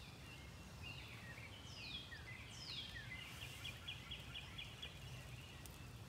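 Songbirds singing faintly: two falling whistled notes, then a quick run of short repeated notes, over a low steady rumble.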